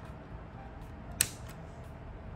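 A pencil tip clicking on the plastic battery latch on the underside of a laptop: one sharp click about a second in.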